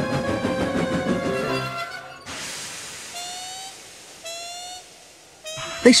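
Background music that ends about two seconds in, followed by a hiss of steam and three short, slightly rising squeals about a second apart, each fainter than the last, as a steam locomotive brakes to a stop.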